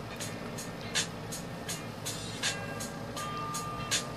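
Graphite pencil scratching on drawing paper in short, repeated shading strokes, about three a second.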